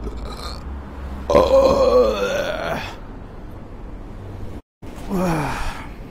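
A man making loud wordless vocal sounds close to the microphone. A short laugh is followed, about a second in, by a long drawn-out groaning sound. After a brief dropout in the audio comes a shorter one falling in pitch.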